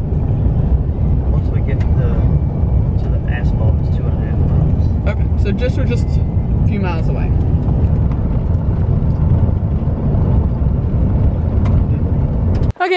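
Road noise heard from inside a pickup truck's cab as it drives on a dirt road: a steady low rumble of tyres and engine, with scattered clicks and rattles over the rough surface.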